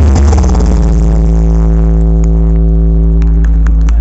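A large stacked sound system with 24 subwoofers playing very loud music with deep bass. About a second in, the music settles into one long held droning bass note while the higher sounds fade away.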